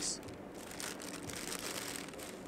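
A paper bag crinkling as it is handled, a few short rustles over low background noise.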